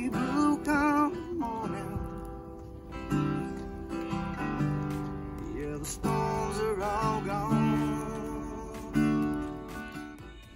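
Acoustic guitar being strummed and picked in a slow song, with a voice singing along in places with a wavering, held tone.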